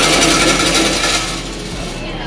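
Loud scratchy rubbing noise on the microphone, strongest in the first second and then easing off.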